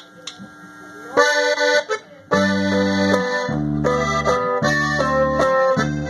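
Accordion playing: a short chord about a second in, then a band starts a tune just after two seconds, with the accordion carrying the melody over low bass notes that change in steps.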